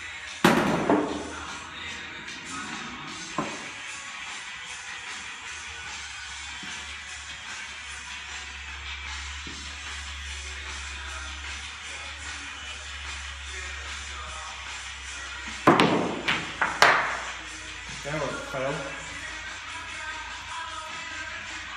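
Pool balls clacking: sharp knocks of the cue and balls on the table, one soon after the start, a smaller one a few seconds later, and two loud ones about three-quarters of the way through followed by softer knocks. Background music runs steadily underneath.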